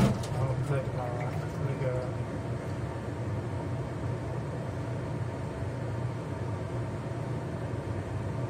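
Kitchen range hood exhaust fan running with a steady low hum. There is a short knock right at the start.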